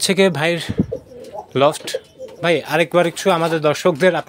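A man talking, with domestic pigeons cooing behind his voice.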